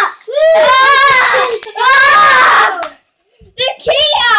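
A child shouting excitedly without clear words: two long, wavering cries, a brief silence near the end, then another cry starting.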